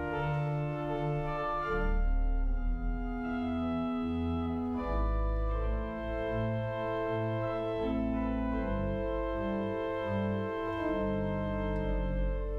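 Church organ played from a three-manual console: slow, sustained chords over deep bass notes, the harmony changing every couple of seconds.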